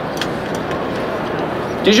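Steady background noise of a large exhibition hall, crowd murmur and ventilation, with a few faint light clicks as a plate and utensils are handled; a man starts speaking at the very end.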